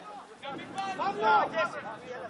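Men's voices talking and calling out close by, with short shouts that peak a little over a second in.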